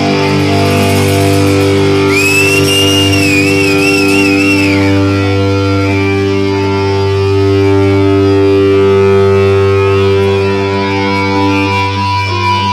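Live rock band, loud: electric guitars holding a long sustained chord. About two seconds in, a high wavering note rises over it and lasts about three seconds.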